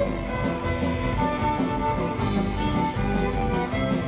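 Live Celtic punk band playing an instrumental passage, the fiddle carrying the melody over strummed guitars and drums.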